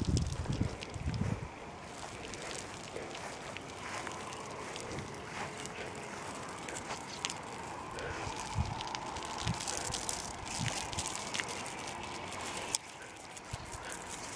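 Wind buffeting the microphone in low thumps during the first second or so, then a faint steady outdoor hiss with scattered small clicks and a faint thin hum in the background.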